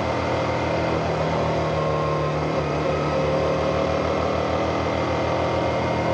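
Motorcycle engine idling steadily, with an even low pulse and no revving.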